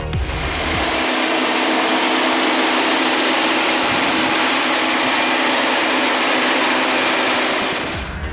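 Audi Q5's TFSI petrol engine idling, heard close up in the open engine bay as a steady, even hiss and hum.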